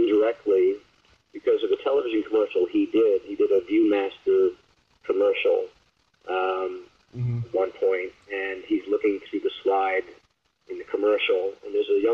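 Speech: a man talking steadily in an interview, with short pauses and a brief low thump about seven seconds in.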